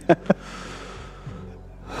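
A man's two quick breathy bursts of laughter, then a long exasperated sigh breathed out into a headset microphone, fading away just before the end.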